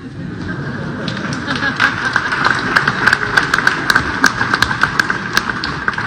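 A small crowd applauding: scattered hand claps over a low hum of murmur, with the clapping filling in from about two seconds in.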